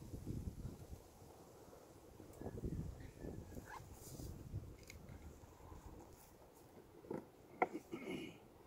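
Wind buffeting the microphone in low, irregular gusts, with a few short sharp clicks near the end.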